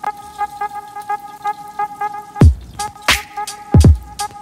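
Hip hop beat: a steady ticking rhythm over held tones, with deep bass drum hits that drop in pitch coming in about halfway through, roughly three-quarters of a second apart.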